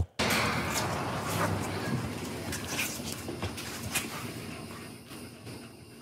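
Muffled, noisy audio from a phone video recorded outdoors. It is a steady rough haze with faint, indistinct voices under it, and it grows steadily quieter toward the end.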